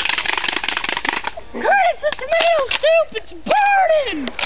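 A fast rattling noise for about the first second, then a string of short, loud voice whoops, each rising and falling in pitch.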